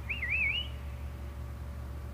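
A short whistled bird call near the start, wavering up and down two or three times as it rises in pitch, over a steady low rumble.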